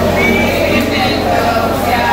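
Many women's voices in unison, loud and continuous, over a steady low hum.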